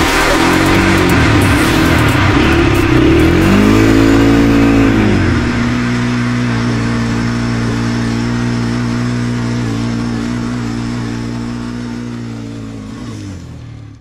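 Quad bike engine revving, its pitch rising and falling twice in the first five seconds, then running at a steady pitch and fading out near the end.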